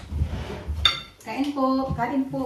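Cutlery and plates clinking during a meal, with one sharp ringing clink a little under a second in. A voice follows from about halfway.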